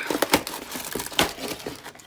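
A taped cardboard shipping box being torn open by hand: the cardboard flap and packing tape ripping, with a quick run of crackling snaps and rustling.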